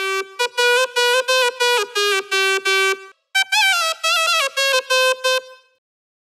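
Synthesized shehnai-like reed lead from a Reason 9 Malström graintable synth patch, with reverb, playing a melody. It starts as a run of quick detached notes; after a brief break comes a phrase with sliding, bending pitch that fades out.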